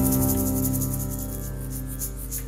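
A live band's held notes ringing on and slowly fading out at the close of a song, with a fast, even high-pitched pulsing above them.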